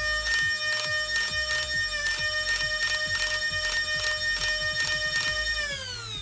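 3D-printed Old Fusion Designs Quik full-auto foam dart blaster firing. Its flywheel motors hold a steady high whine while the pusher drives a rapid, even stream of darts through them. Near the end the shots stop and the whine falls in pitch as the flywheels spin down.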